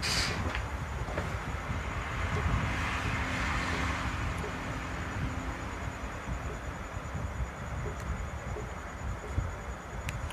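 A distant engine hum that swells about two to three seconds in and fades, over steady background noise.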